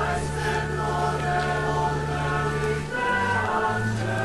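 Choral music of long held notes over steady low bass notes; the chord changes about three seconds in.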